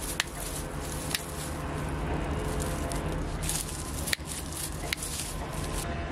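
Secateurs snipping through the dry old stems of a lobelia at its base: a few separate sharp clicks over a steady low background hum.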